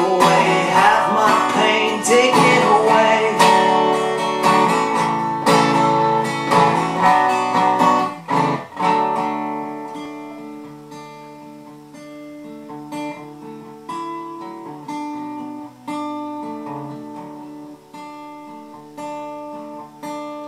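Resonator guitar strummed hard for about eight seconds, then suddenly quieter, with picked single notes and chords left to ring. A sung line trails off over the strumming at the start.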